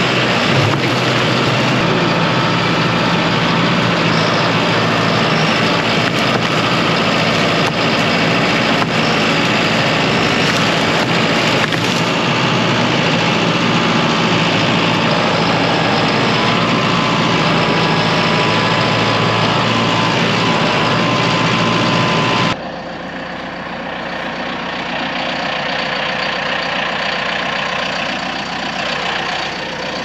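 John Deere 5090E tractor's four-cylinder diesel engine running loud and close, working as the front loader pushes downed trees out of the way, with a steady whine joining in for a few seconds. About two-thirds of the way in it cuts suddenly to a quieter, steady engine sound.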